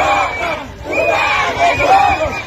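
Crowd of street protesters shouting slogans together in loud, repeated phrases, with short breaks between them.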